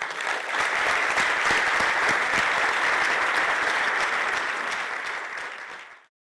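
Audience applauding in a lecture theatre, a dense steady clapping that fades slightly near the end and then cuts off abruptly.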